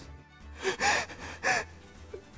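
A person's sharp, breathy gasps: a couple of short intakes of breath in the middle, over soft background music.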